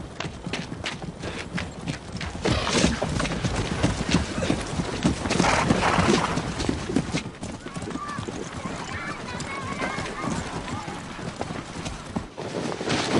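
Horses galloping, hooves clattering in quick, irregular beats, with a horse whinnying and voices calling out.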